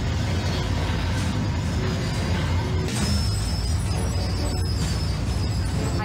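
Film score music over a steady deep rumble from the Thunderbird 2 launch sound effects; a faint high whine enters about halfway.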